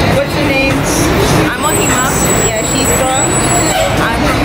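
Busy city street traffic with people talking over it, and a thin, steady high whine running through the second half.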